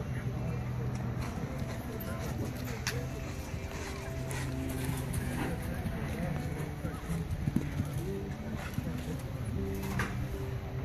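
Indistinct background voices, too muffled for any words to come through, over a steady low hum, with a few short sharp knocks.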